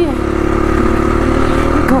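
Dual-sport motorcycle engine running at a steady cruising pace on a gravel dirt road, with a constant rush of riding noise over the steady engine drone.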